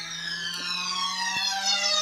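Electronic synth sweep from the ORG 2019 keyboard app, swelling steadily in loudness. Many layered tones glide at once, the high ones falling while a low one slowly rises, like the riser that opens a dance remix.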